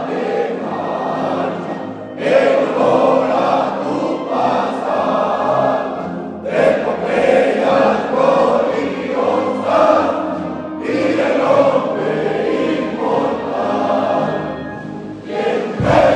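A large group of voices singing a hymn together, in long phrases with short breaks about every four seconds.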